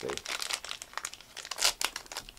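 Foil trading-card pack wrapper crinkling and tearing as it is opened by hand: a quick run of crackles, with a louder crackle near the end.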